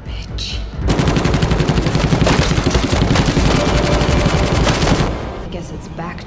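Automatic gunfire: one long, rapid, steady burst of shots starting about a second in and stopping about five seconds in.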